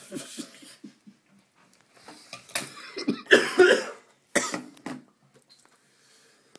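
A man laughing, followed by a run of harsh, hacking coughs, the loudest a little past the middle, then a last cough about four and a half seconds in.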